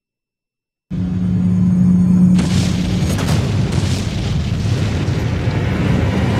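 Silence, then about a second in a dramatic soundtrack cuts in suddenly: a deep boom and rumble over a held low tone, opening out a little over a second later into a louder rushing wash with a faint regular pulse.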